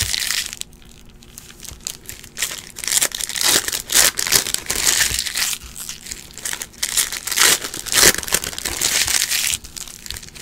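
Crinkling and crackling of Panini Prizm trading-card foil pack wrappers being handled and torn open, in repeated bursts after a brief quieter stretch near the start.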